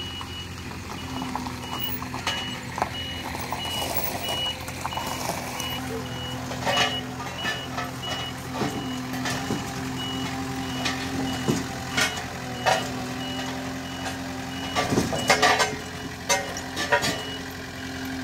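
Sakai SW500 tandem road roller's diesel engine running steadily while its reversing alarm beeps over and over, about twice a second. A few sharp knocks and clanks break through, the loudest about fifteen seconds in.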